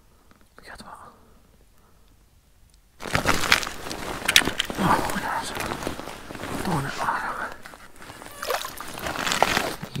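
Close handling noise with many sharp clicks and crackles as a perch is hauled up by hand through an ice-fishing hole and gripped, with wet sloshing at the hole. It starts abruptly about three seconds in, after a quiet stretch, and mixes with low muttering.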